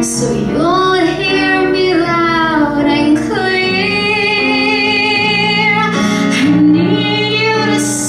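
Woman singing a musical-theatre song over instrumental accompaniment, with long held notes in vibrato and upward slides in pitch.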